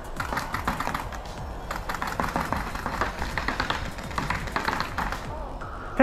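Paintball markers firing in rapid, irregular strings of sharp pops across the field, a dense clatter like fast typing.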